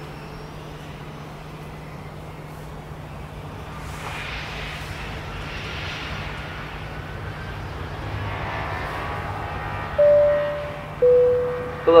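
Airliner cabin noise, a steady drone and rush of air that grows a little louder partway through. Near the end comes a two-note cabin chime, high then low, the signal that a cockpit announcement is coming.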